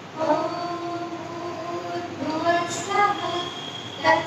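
A woman's voice chanting a prayer in a sung tone, holding long notes with slides in pitch between them.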